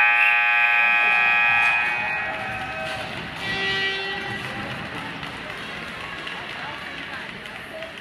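An ice-hockey arena horn sounds one long steady blast of about two seconds, echoing through the rink as it dies away. A shorter, fainter tone follows about three and a half seconds in, over voices.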